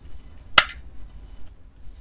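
A single sharp click about half a second in, over a faint low hum.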